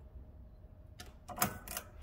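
A quick run of sharp clicks and knocks, starting about halfway through and over in under a second, the loudest in the middle.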